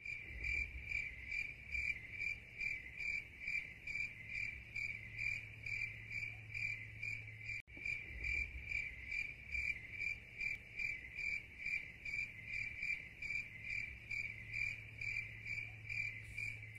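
A cricket-chirping sound effect: a steady chirp pulsing about three times a second over a low hum, with a brief break about halfway through.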